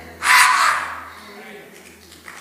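A man's single loud shout through a church PA microphone, starting about a quarter second in and dying away within about half a second.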